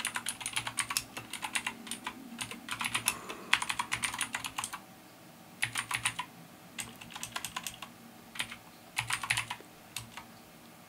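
Computer keyboard being typed on: quick runs of keystrokes broken by short pauses.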